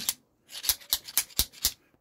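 A quick run of light clicks and knocks, about eight in just over a second, from a metal magneto drive shaft and gear being handled and turned over in the hand.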